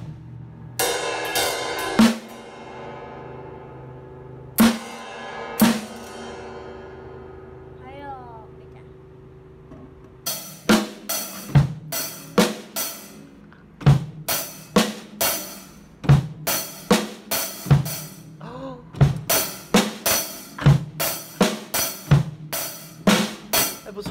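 Acoustic drum kit being played. A few cymbal crashes in the first seconds are each left to ring and fade. From about ten seconds in, a steady beat of bass drum, snare and cymbal strokes continues to the end.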